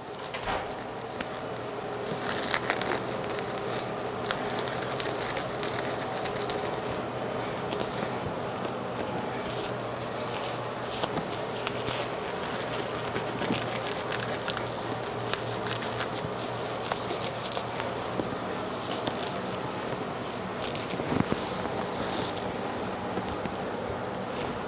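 Thin disposable exam gloves being pulled onto the hands, with many small crackles and rubbing sounds, over a steady background hum.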